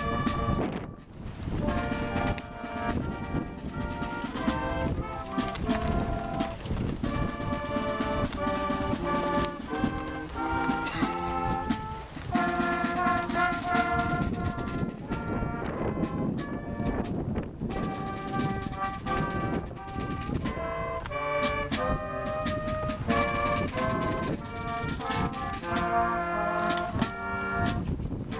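Brass instruments playing a melody in chords, the held notes changing every half second or so without a break.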